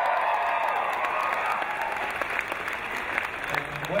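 Large audience applauding, loudest at first and gradually dying down, until a man's voice comes back in near the end.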